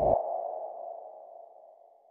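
A single ringing, ping-like tone that starts with a brief low thud and fades away over about two seconds.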